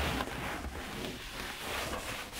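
A cloth rag rubbing over a painted wall in wiping strokes, a soft, uneven rubbing hiss.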